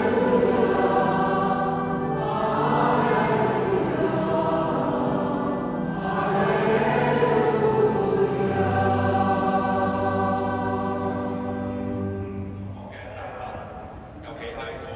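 Church choir singing a slow hymn in long held chords, the singing trailing off near the end.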